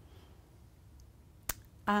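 Quiet room tone, broken by a single sharp click about one and a half seconds in, then a woman starts speaking just before the end.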